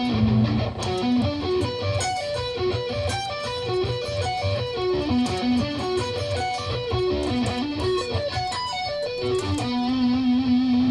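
Electric guitar playing a slow sweep-picked B minor triad arpeggio, with a melody note at the top, across two positions on the neck. Single notes climb and fall in repeated runs, and a low note is held near the end.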